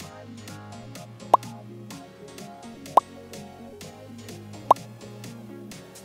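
Three short, loud pop sound effects, each a quick upward blip, about a second and a half apart, over steady background music.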